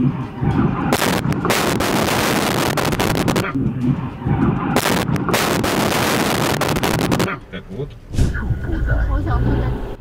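Car crash heard through a dashcam inside the car: loud crashing and crunching noise starts about a second in and lasts a couple of seconds. A second long burst of noise comes about five seconds in. Near the end a low rumble follows.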